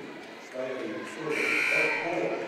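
Gymnasium scoreboard buzzer sounding once, a steady blare lasting under a second that starts a little past halfway through, over the murmur of voices.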